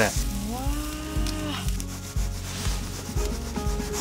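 A folding knife sawing back and forth through a grilled beef steak on a wooden cutting board, in repeated rubbing strokes.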